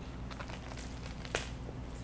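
A person biting into and chewing a raw nori seaweed roll filled with crunchy sprouts and seeds: a few quiet, short crunches, the sharpest just past halfway.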